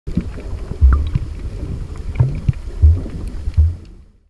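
Water sloshing and splashing around a camera's microphone, with several dull, uneven low thumps and a few small clicks. It fades out near the end.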